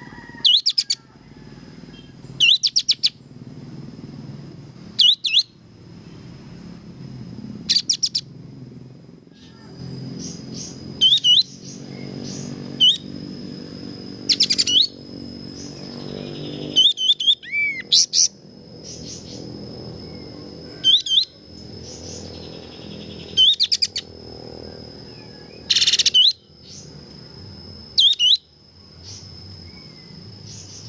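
Songbird tutor recording of the kind used to train caged magpie-robins: short, fast bursts of high chirps and trilled notes about every two to three seconds, with pauses between. A steady high tone runs underneath.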